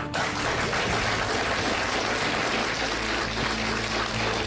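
Studio audience applauding, starting suddenly and going on steadily, with the show's break music underneath.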